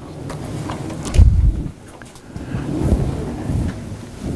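Low rumbling thumps of handling noise on a table microphone, strongest about a second in and again around three seconds.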